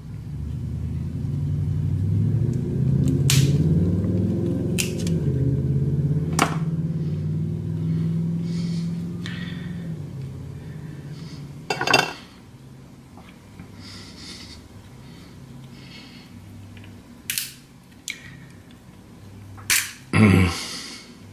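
Crab leg shell snapping and cracking as it is broken apart by hand, a handful of short sharp cracks spread through. Under them, a low rumble runs loud for about the first ten seconds, then drops to a faint steady drone.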